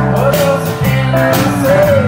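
Live blues-rock band playing an instrumental passage: a guitar melody with bent notes over bass and drums, with cymbal strokes about four times a second.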